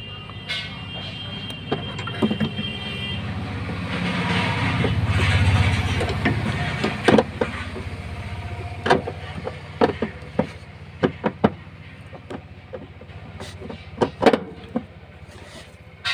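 Sharp metallic clicks and knocks as a new clutch master cylinder is worked into place on the firewall. Under them a vehicle engine's low hum swells to a peak about five seconds in and then fades away.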